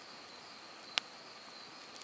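A steady high drone of insects singing in the evening woods, with one sharp crackle from the small wood campfire about a second in.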